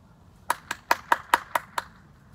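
Hands clapping: a quick run of seven sharp claps, about five a second, starting about half a second in.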